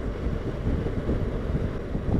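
Heavy wind noise on the microphone of a motorcycle at road speed, very windy: a dense, low rumble without any clear tone.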